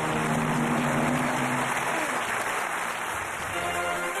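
Studio audience applauding over a held musical sting that marks a correct answer; near the end the sting gives way to the show's next music cue.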